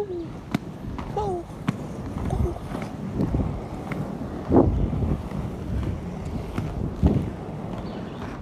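Roller skate wheels rolling along a paved path: a rough, steady rumble with a few knocks and clicks, while wind buffets the phone's microphone.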